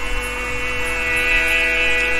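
A sustained musical drone: a held chord of many steady tones from the accompaniment, with a lower note or two joining in partway through.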